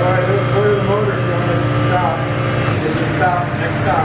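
Electric hydraulic power unit of a two-post lift running with a steady whine as it raises a pickup cab off its frame, winding down about three seconds in.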